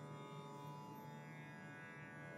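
Faint, steady Carnatic drone accompaniment: many sustained tones held together without change.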